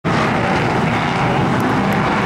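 A field of Super Street stock-car engines running together on the track, a loud, steady drone from the pack with no rise or fall in pitch.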